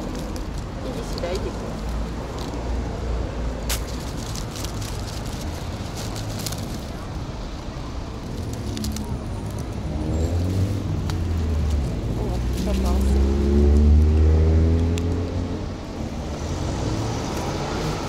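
Road traffic: a motor vehicle engine over a steady low rumble, its note rising and loudest about two-thirds of the way through, with scattered light clicks and rustles throughout.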